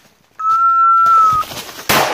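A single steady blast on a dog whistle, about a second long, held on one pitch that dips slightly as it ends. Near the end, a sharp bang with a long trailing echo.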